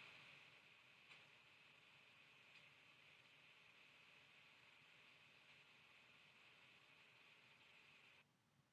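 Near silence: faint steady hiss of a quiet microphone line.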